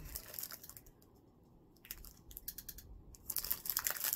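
Plastic Peeps candy package crinkling as it is cut open with a pocket knife: soft rustles and small clicks at first, then a denser run of crinkling near the end.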